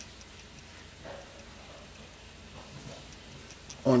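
A few faint, light ticks over a low steady hum.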